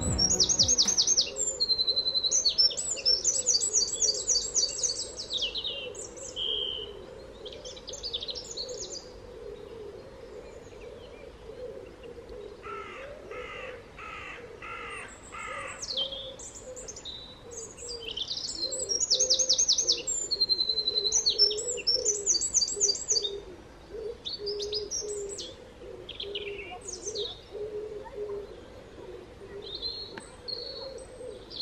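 Several garden birds singing, with repeated high, fast trilling phrases and chirps. About halfway through comes a run of about five harsher calls, lower in pitch.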